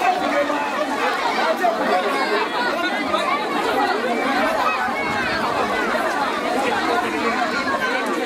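Crowd chattering: many voices talking at once and overlapping, with no single voice standing out.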